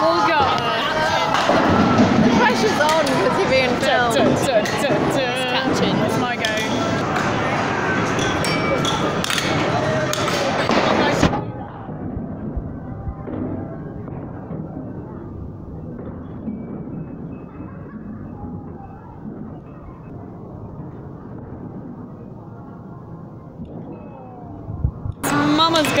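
Arcade din of indistinct voices and background music, with scattered sharp knocks. About eleven seconds in, the sound suddenly turns quieter and muffled, losing all its treble, until it comes back to full brightness near the end.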